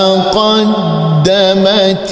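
A man chanting Quran recitation in Arabic, in a melodic style with long held notes and ornamented turns in pitch, broken by two brief pauses.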